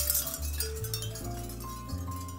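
Soft background music: held mallet-like notes over a bass line. A swinging capiz shell mobile clinks faintly near the start.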